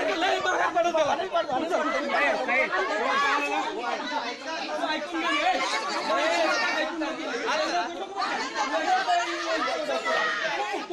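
Several raised voices talking and shouting over one another without pause, a heated argument during a scuffle.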